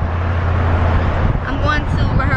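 Road and engine noise inside a moving car's cabin: a steady low rumble under an even hiss. A voice starts talking about one and a half seconds in.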